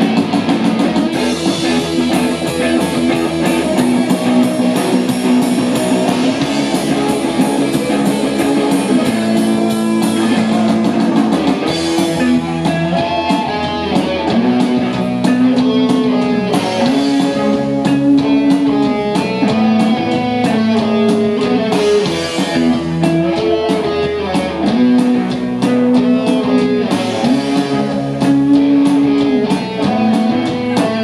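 Live rock band playing an instrumental passage: electric guitars, including a white Les Paul-style guitar, play a melodic line of held, repeating notes over bass guitar and a drum kit, with no vocals.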